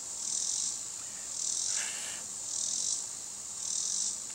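Insects calling: high-pitched pulses that repeat about once a second.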